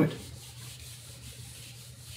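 Felt whiteboard eraser rubbing across a whiteboard, a steady quiet scrubbing as marker drawings are wiped off.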